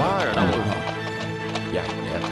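A horse's hooves clip-clopping, with a brief whinny near the start, under soundtrack music with held notes.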